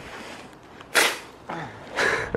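A foam sled scrapes sharply once across crusty snow about a second in as the rider shifts on it to push off, followed by a short low grunt.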